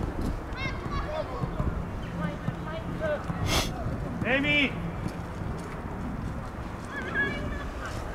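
Footballers' short shouts and calls carrying across an open pitch during play, with one louder call about four and a half seconds in. A single sharp knock comes about three and a half seconds in.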